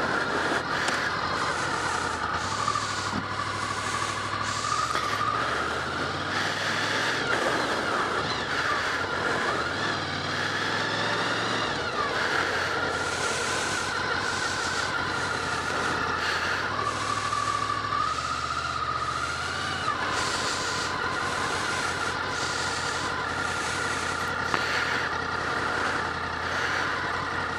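Honda VFR800's V4 engine running at low car-park speed, its revs climbing in steps and dropping back several times. Wind noise over the helmet-mounted microphone runs underneath throughout.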